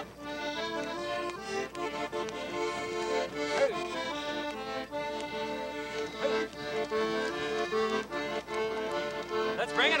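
Piano accordion playing a tune, its chords and melody notes changing in quick, even steps.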